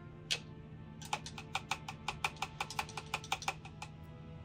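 A paintbrush knocking rapidly against the sides of a glass water jar as it is rinsed: one click, then about a second in a quick run of small sharp clicks, about eight a second, that stops shortly before the end.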